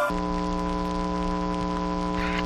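A steady hum made of several fixed tones over a low rumble, with no change in pitch or level, like electrical mains hum.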